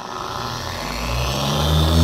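Meguiar's dual-action polisher with a sanding disc starting up and sanding bare car paint. Its motor hum and sanding hiss grow steadily louder as it runs, and the disc cuts into the unprotected paint at once.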